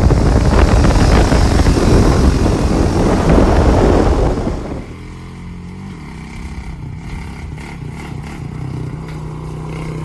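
ATV engine running while riding, buried in heavy wind rumble on the microphone. About halfway it drops suddenly to a much quieter, steady low engine drone.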